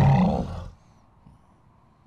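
A deep, loud Ork battle cry from the animation's soundtrack, lasting under a second and cut off sharply, followed by near silence.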